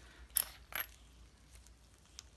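Clicks from the ball-detent click grip of a Hummingbird Bronc V10 tattoo pen being twisted: two sharp clicks about a third of a second apart, the first louder, then a couple of faint ticks.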